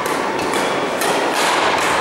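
Badminton rackets striking the shuttlecock in a rally: a few sharp hits about a second apart, echoing in a large sports hall.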